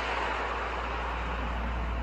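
Steady background hiss with a low hum underneath and no distinct events.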